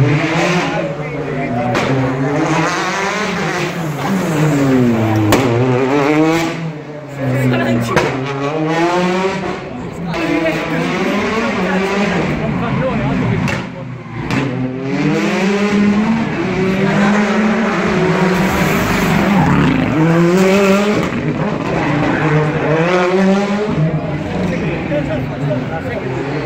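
Rally car engine revving hard, its pitch climbing and dropping over and over as it accelerates, shifts and brakes around a tight asphalt stage.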